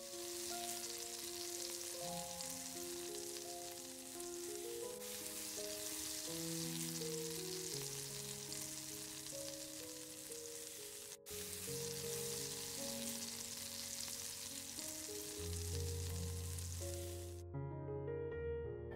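A zucchini, carrot and egg pancake sizzling steadily as it fries in a pan. The sizzle breaks off for an instant about eleven seconds in and stops shortly before the end, with soft piano music playing throughout.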